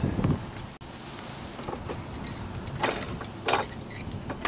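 Footsteps on snow-dusted frozen grass: a few short crunches and scrapes, two louder ones near the end.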